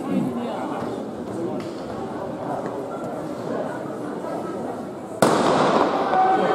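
Spectator chatter in a sports hall, then a single starting-pistol shot about five seconds in that sends off a race, after which the crowd noise stays louder.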